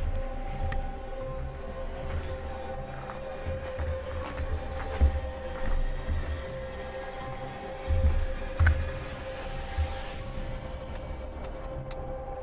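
A steady high-pitched tone with a fainter higher tone above it, under irregular low thumps.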